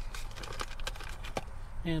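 A scatter of light clicks and taps from handling a RAM ball mount and its screws against a plastic dash panel.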